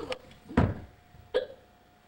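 Two short, abrupt vocal sounds from a person, about three-quarters of a second apart, the first the louder.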